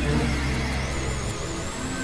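Experimental electronic drone music from synthesizers: low, steady held tones under a noisy hiss, with a thin, high, warbling tone that climbs about halfway through and then holds.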